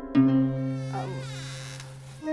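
A buzzing sound effect that starts sharply and fades away over about two seconds, with a brief swooping glide in the middle.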